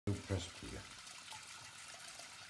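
A brief low voice at the very start, then faint steady trickling water in a kitchen sink filled with water and food scraps, a hand working at the drain.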